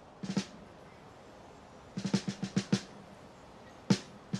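Snare drum played alone in short runs of hits: three quick strokes just after the start, a faster run of about six about two seconds in, and one hard hit near the end.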